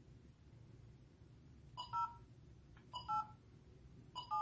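Touch-tone keypad beeps from an Android phone's dialler as a number is entered: two short two-note tones about a second apart, for the digits 0 and 8. Each is preceded by a short click.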